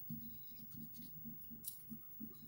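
Brown wax crayon rubbing on the paper of a colouring book in quick repeated strokes, about five a second; faint.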